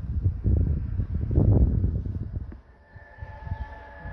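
Low, uneven rumbling noise, like wind buffeting the microphone, for the first two and a half seconds. About three seconds in, a faint steady high tone with overtones begins.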